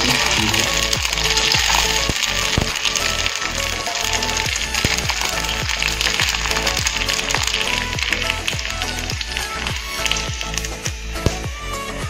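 Puris deep-frying in hot oil in an iron wok, a steady sizzle that eases near the end as they are lifted out on a wire strainer. Background music with a steady beat plays over it.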